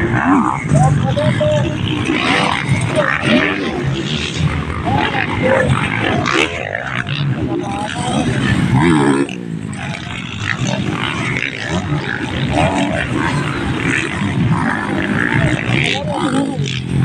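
Motocross dirt bike engines revving as the bikes race past and take jumps on a dirt track, with people's voices over them.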